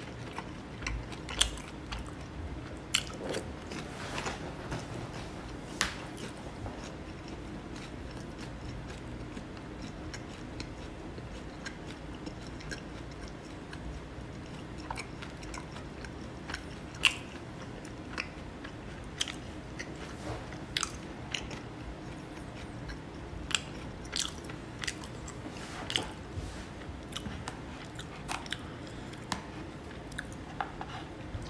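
A person eating close to the microphone: chewing, with sharp clicks and taps scattered irregularly throughout from wooden chopsticks working in a plastic bowl.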